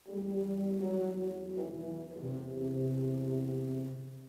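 Low brass quartet of euphoniums and tubas playing sustained chords. The music starts suddenly, the chord shifts and a low bass note comes in about halfway, and the sound breaks off just before the end.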